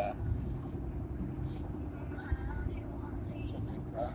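Car driving at road speed, heard from inside the cabin: a steady low rumble of road and engine noise, with a few faint voice-like sounds in the middle.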